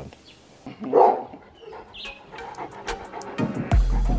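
A dog barks once, loudly, about a second in. Music with a deep bass beat comes in near the end.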